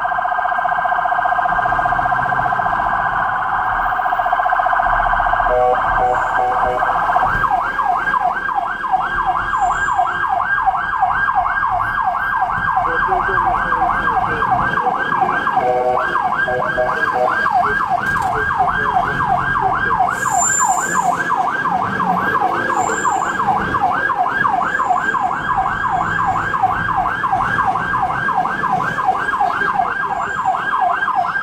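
Ambulance siren heard from inside the cab: a fast warble for the first few seconds, then a yelp of repeating rising sweeps, about three a second. A brief steady tone breaks in twice.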